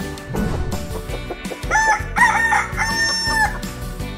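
A rooster's cock-a-doodle-doo crow, a few short notes and then a long held one, starting a little under halfway in, over intro music.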